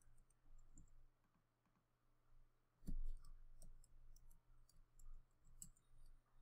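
Faint, scattered clicks of a computer mouse, with one louder click about three seconds in followed by a run of lighter ones.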